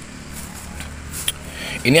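Steady low background hum with a faint tick a little past a second in; a man's voice begins at the very end.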